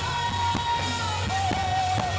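A rock band playing live: a singer holds long, slightly wavering notes over electric guitar, bass and drums.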